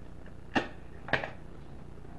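A wooden match struck twice on the side of a small matchbox, two short scrapes about half a second apart; the match is alight after the second.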